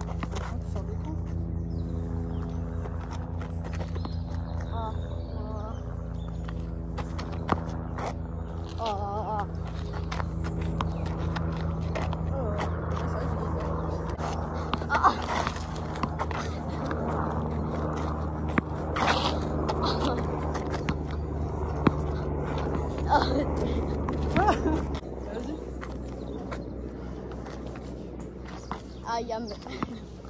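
A steady low motor hum with a pulsing beat that cuts off about 25 seconds in, overlaid by short voice exclamations and a few sharp knocks, typical of a tennis ball bouncing on a hard court.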